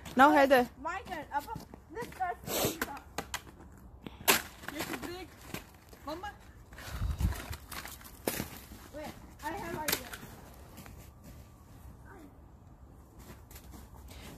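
Voices calling out and exclaiming, with a snow shovel digging into and flinging packed snow a little past the middle, heard as a dull thud followed by a short sharp scrape.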